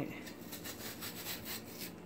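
Metal squeeze-grip melon slicer scraping along the inside of a watermelon rind, a quick run of short scratchy strokes as it cuts the last flesh free.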